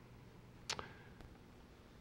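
Near silence: room tone with a low steady hum, broken by one short faint click about a third of the way in.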